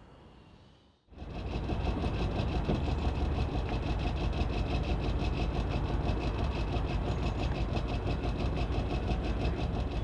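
Narrowboat engine running steadily with a fast, even beat, cutting in about a second in.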